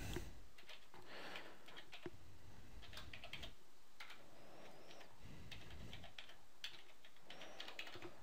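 Faint keystrokes on a computer keyboard as numbers are typed in: scattered quick taps, some in short runs, over a low steady hiss.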